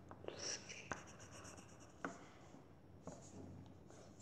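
Faint scratching of drawing on paper, with a few small clicks.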